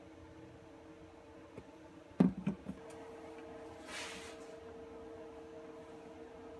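Steady low hum of a running forced-air electric shop heater. A short cluster of knocks comes about two seconds in, and a brief rustle comes near four seconds.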